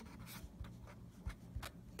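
Pen scratching on paper as a word is handwritten: a string of short, faint strokes.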